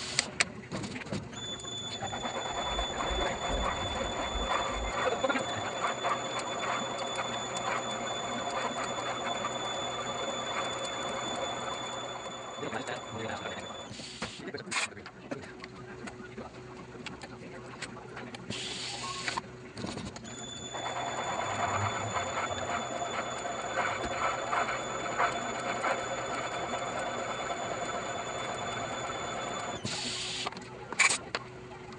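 Valve seat machine spinning a single-blade radius cutter in an exhaust valve seat of a cylinder head: a steady high whine over a rough chattering cut. It runs in two passes, one of about twelve seconds and one of about ten seconds, with a short hiss in the pause between them.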